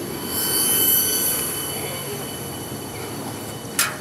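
The last cars of a Norfolk Southern freight train rolling past below, their wheels squealing on the rails in several steady high-pitched tones. The squeal is loudest about a second in, then eases as the train passes. A single sharp click comes near the end.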